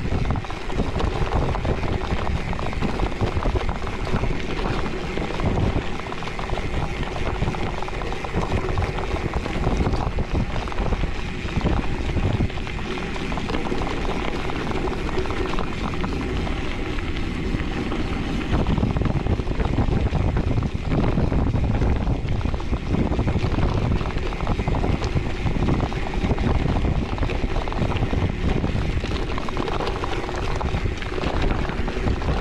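Gravel bike's 40 mm Panaracer GravelKing tyres rolling fast over loose gravel, a continuous crunch and rattle, with wind buffeting the microphone.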